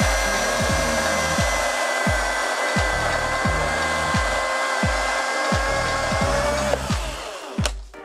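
Milwaukee M18 FCHS FUEL cordless brushless chainsaw cutting through a log: a steady high electric-motor whine with chain and wood noise. The whine sags slightly just before the saw stops, about seven seconds in, as the cut finishes. A background music track with a regular thumping beat plays underneath.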